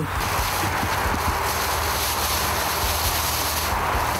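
Steady noise of heavy site machinery running, an even rumble with a dense hiss above it and no change in level.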